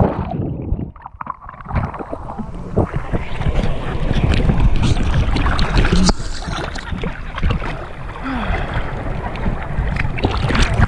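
Seawater sloshing and splashing against a GoPro held at the surface in small waves. Just after the start the camera goes under and the sound turns muffled and dull for about a second and a half, then the splashing and lapping come back.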